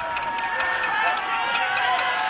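Many voices shouting and crying out at once, high and strained, carried from a distance: prisoners calling for help from inside a detention centre.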